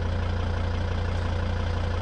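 Volvo estate car's engine idling steadily, a constant low hum.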